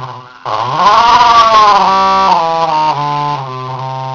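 Circuit-bent Furby's voice sample: after a brief dip, an arching call rises and falls in pitch, then breaks into a stuttering glitch of short held tones stepping in pitch.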